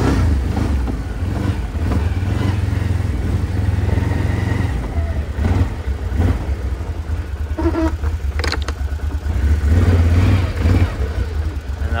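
A Can-Am Outlander XT 1000R ATV's 1000 cc twin-cylinder engine pulling the machine under throttle in standard throttle-control mode, its sound rising and falling with the throttle and loudest about ten seconds in.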